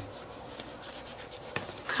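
A hand rubbing and dabbing acrylic paint onto a paper art-journal page: a faint, scratchy rubbing, with one small click about one and a half seconds in.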